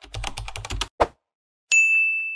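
Outro sound effects: a quick run of about ten keyboard-typing clicks, a single sharper click about a second in, then a bell ding that rings on with one steady high tone, the YouTube subscribe-button and notification-bell effect.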